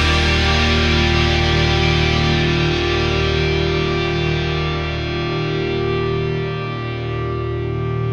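Closing bars of a progressive rock song: distorted, effects-laden electric guitar chords sustaining and slowly dying away, with no drum hits.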